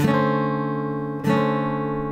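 Acoustic guitar: a chord played and left to ring, then struck again about a second and a quarter in and left ringing.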